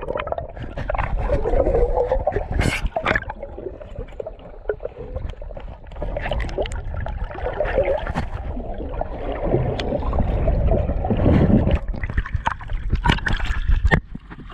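Water gurgling and bubbling, heard muffled through the camera underwater as a diver swims. Near the end come several sharp splashes and knocks as he leaves the water.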